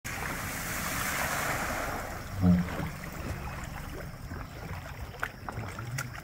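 Car tyres driving through standing floodwater on a road, a hissing spray of water for the first two seconds or so. A short, loud, low thump about two and a half seconds in, then quieter noise.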